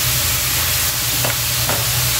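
Ground pork sizzling as it fries in a metal wok, with a steady hiss, while a metal spatula stirs it and clicks lightly against the pan twice in the second half. A steady low hum runs underneath.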